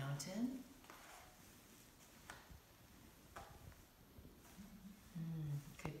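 Faint rustling and brushing of a felt cloth being unfolded and smoothed on a wooden floor, with a couple of light taps. A woman's voice murmurs briefly at the start and again near the end.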